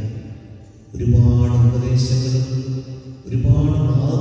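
A man's voice chanting in long, steady held notes. The first note starts about a second in, and a second phrase begins just after three seconds.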